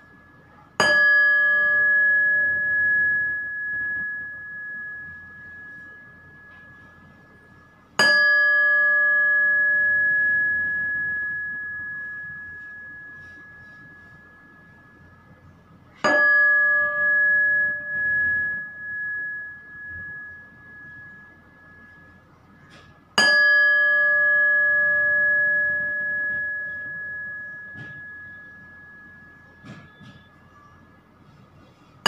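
A meditation bell struck four times, about every seven to eight seconds, each strike ringing on and slowly fading. The third strike's ring wavers as it dies away.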